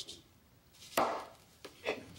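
A single sharp knock about a second in, then two lighter knocks close together near the end, over quiet room tone.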